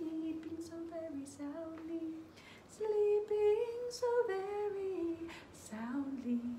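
A woman singing a slow lullaby tune alone, with no words caught and no accompaniment. About three seconds in, her voice gets louder and rises, then sinks back down.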